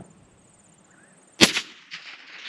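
A single shot from a scoped precision rifle about a second and a half in: one sharp, loud crack with a short ringing tail after a quiet spell while the shooter holds his aim.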